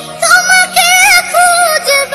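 A voice singing a Bengali devotional ghazal (gojol), with long held notes that waver and bend in pitch.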